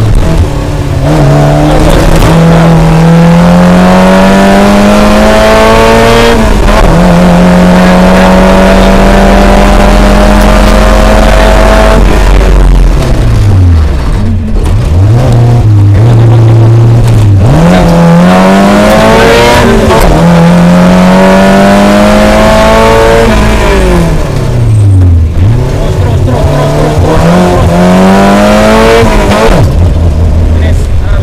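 Suzuki Jimny rally car's engine heard from inside the cabin, revving up in long climbing pulls broken by gear changes, then dropping off and picking up again several times as the car slows and accelerates.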